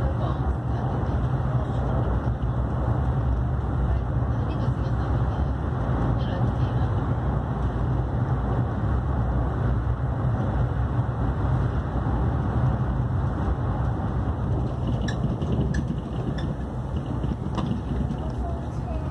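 Interior running noise of an AREX 1000 series electric train at speed: a steady low rumble from the wheels and running gear, a little quieter near the end.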